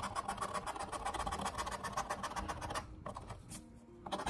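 A coin-shaped disc scratching the coating off a scratch-off lottery ticket in rapid, repeated strokes, several a second. The strokes ease off about three seconds in.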